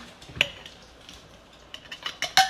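A single sharp clink on a glass mason jar as flour is tipped into it, followed by quiet handling with a few small clicks near the end.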